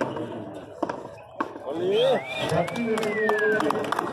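A frontón pelota ball being struck and hitting the court wall during a rally: a few separate sharp smacks, with players' voices calling out in between.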